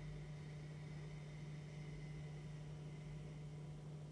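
A slow Ujjayi breath: a faint, soft hiss of air drawn through a narrowed throat and the nose, fading out after about three seconds. Under it runs a steady low hum.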